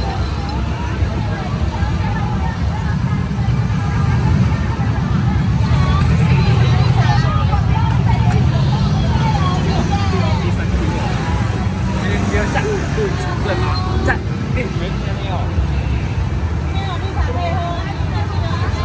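Many people talking at once along a road, over a steady low rumble of motor traffic that swells around six to nine seconds in.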